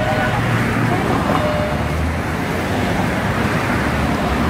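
Road traffic on a busy city street: a steady rumble of passing cars, engines and tyres, with faint voices.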